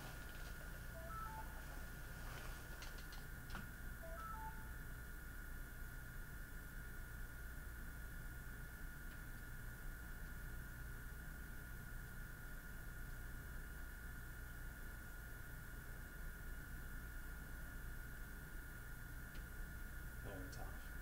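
Faint steady electrical hum with a thin high whine over it. Two brief clusters of short beeps at different pitches come about a second in and again about four seconds in.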